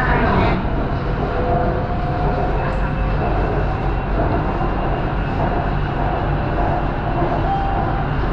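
Inside a moving BTS Skytrain car: the train running along the elevated track, a steady rumble with a few faint whining tones over it.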